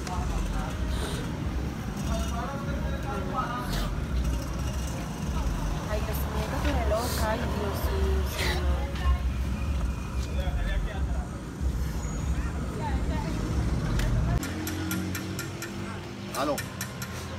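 A strong low rumble with quiet, indistinct voices over it; the rumble stops abruptly near the end.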